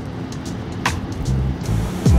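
Background music: a beat with deep, sustained bass notes and a sharp hit about a second in.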